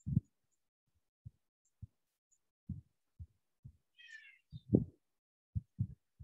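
About ten soft, dull low thumps at irregular intervals, the loudest just before five seconds in. A brief high chirp about four seconds in.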